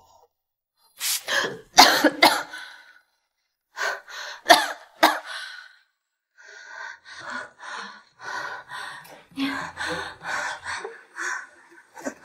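A person's breathy vocal sounds without words: a few sharp gasps or huffs in the first half, then a run of short breathy pulses, about two to three a second.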